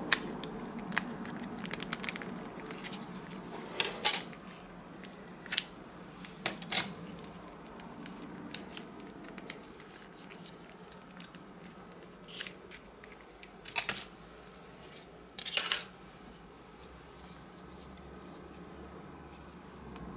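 Hands opening a mobile phone and taking out its SIM card: scattered sharp plastic clicks and brief scrapes, several seconds apart at first, then a few closer together near the middle, over a faint steady low hum.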